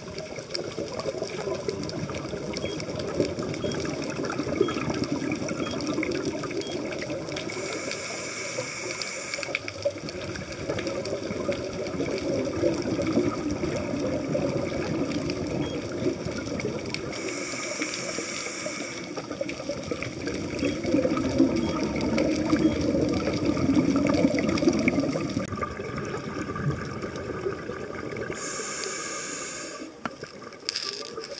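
Scuba diver breathing through a regulator underwater: a short hiss of inhalation three times, roughly every ten seconds, each followed by a long rush of exhaled bubbles.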